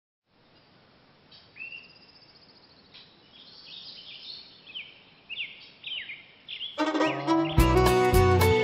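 Songbirds chirping, a string of short whistled calls that mostly sweep downward. About a second before the end, a bluegrass band comes in loudly, with fiddle and a steady bass line.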